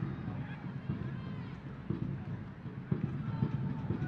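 Stadium ambience during live soccer play: a low murmur of crowd and distant voices, with a sharp knock about three seconds in.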